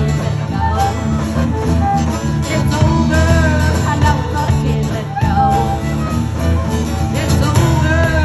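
Live band playing a country-rock song on drum kit, acoustic guitar and electric fiddle, the fiddle's bowed notes gliding over a steady beat.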